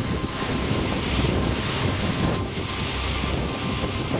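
Pilot boat running fast alongside: a steady low engine rumble under the rushing of its bow wave and wake.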